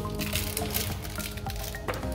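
Background music with steady held notes, and a light click near the end.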